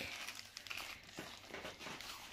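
A crisp packet crinkling faintly as it is handled, in a few short rustles.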